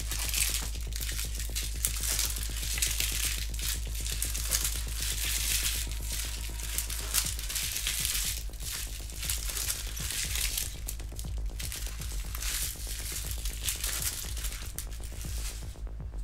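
Trading cards being handled and sorted by hand, with bursts of rustling and crinkling every second or two, over background music with a steady low bass.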